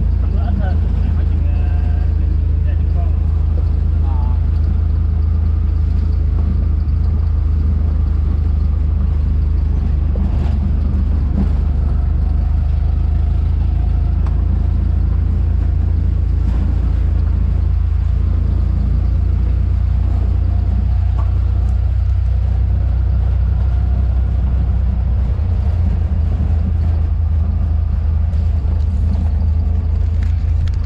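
Steady low rumble of a vehicle driving along a road, heard from inside the moving vehicle.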